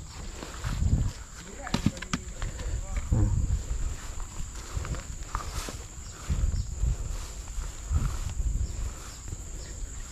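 Plantation ambience: a steady high insect drone, with irregular low thuds of footsteps moving through long grass and faint voices in the distance.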